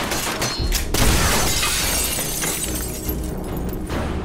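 Glass windows shattering and breaking, with a loud crash about a second in and debris spilling throughout.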